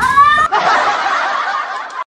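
A child's short high-pitched cry, then about a second and a half of laughter.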